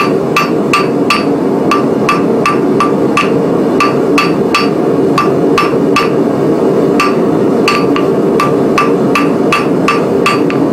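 Hand hammer striking a glowing steel bar on an anvil in a steady rhythm of about two or three blows a second, each blow with a short metallic ring: the forge-welded end of a 3/8-inch bar being drawn out to a point. A steady roar of the gas forge runs underneath.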